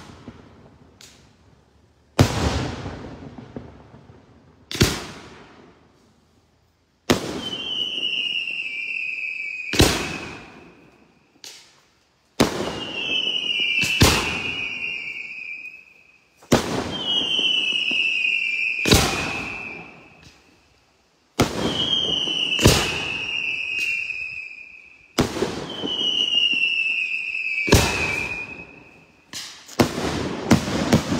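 Daytime aerial fireworks: a dozen sharp shell bursts, each trailing off in a long echo. From about seven seconds in, five shrill whistles come at a steady pace, each falling slightly in pitch over two to three seconds with a bang in its middle.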